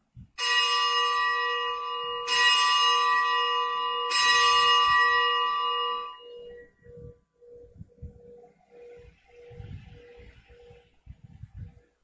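A bell struck three times, about two seconds apart, each stroke ringing on; after the last the ringing fades over several seconds into a single low, pulsing hum. This is the consecration bell, rung at the elevation of the host.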